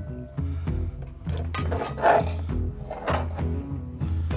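Background music with a steady bass beat. Over it, metal spatulas scrape against a cast-iron Dutch oven as a meat roll is lifted out, loudest about two seconds in and again near three seconds.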